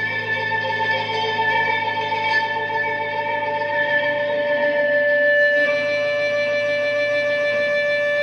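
Strat-style electric guitar through a Mathis Audio Tech TT Fuzz germanium fuzz stacked with an OD Texas Tone overdrive, into a Fender Blues Junior tube amp, holding long sustained fuzzed notes. A little past halfway it moves to a new note that rings on with long, even sustain.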